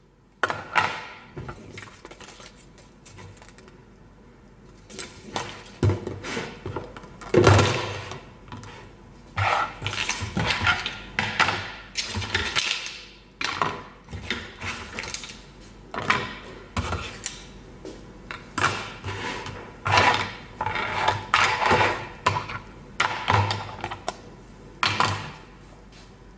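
Clear plastic food storage containers and their snap-lock lids being handled and set down on a wooden table: repeated, irregular plastic knocks and clatters with rustling in between.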